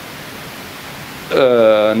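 A steady hiss of background noise for a little over a second, then a man's voice comes back in with one long drawn-out vowel.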